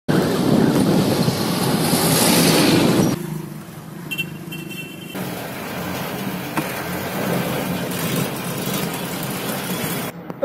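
Truck engine running with road noise, heard from inside the cab. It is loud for about three seconds, then drops suddenly to a quieter, steady level. A brief high-pitched tone comes about four seconds in.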